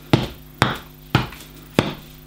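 Home-made flail being swung over and over, its rope-tied tennis ball striking four times about half a second apart, each a sharp knock.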